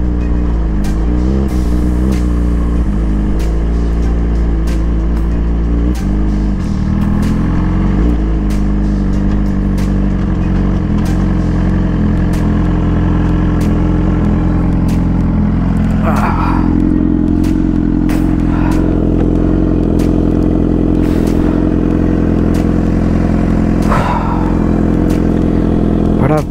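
Suzuki GSX-R sport bike's inline-four engine idling steadily at the roadside, settling to an even idle a few seconds in, with scattered sharp clicks.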